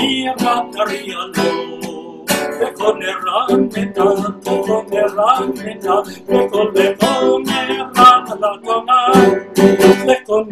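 A man sings a Jewish liturgical melody, accompanying himself on a strummed acoustic guitar, with an electronic keyboard playing along.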